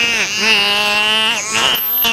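Bottlenose dolphins vocalizing in air through the blowhole: long, whiny, nasal calls in three stretches, each bending down in pitch as it ends. A thin, very high whistle starts near the end.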